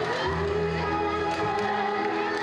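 Symphony orchestra playing, with the strings holding long sustained notes.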